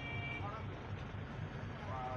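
A vehicle engine idling in a steady low rumble, heard from inside the truck cab, with a brief high tone at the start and faint voices in the background.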